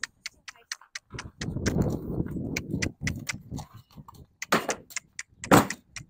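Irregular sharp clinks and knocks at a horse trailer as a horse shifts about by its ramp, with a shuffling rustle between about one and three seconds in.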